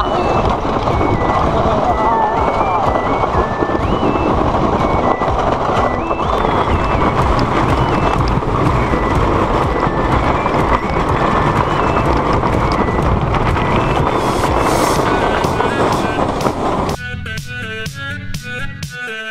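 Onboard sound of a wooden roller coaster train running on its track: a loud, steady rush of wind and wheel rattle, with a music track's melody laid over it. About a second before the end it cuts abruptly to music alone, with a fiddle.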